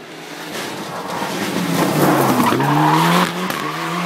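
Mitsubishi Lancer Evo IX rally car's turbocharged four-cylinder engine at full speed, closing in and passing, with tyre and loose-surface noise. It grows louder to a peak about two to three seconds in. The engine note dips and then holds steady, and the level drops a step just after three seconds.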